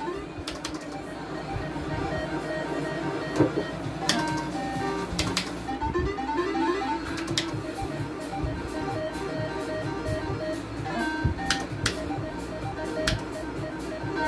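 Gold Fish slot machine's game music: a plucked-string-like tune with short runs of electronic notes, broken by a few sharp clicks.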